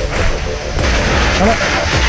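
Fire hose water jet hissing as it sprays onto burning timber, growing louder about a second in, over a low rumble.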